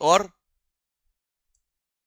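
A man says one short word, then the sound cuts off to dead silence.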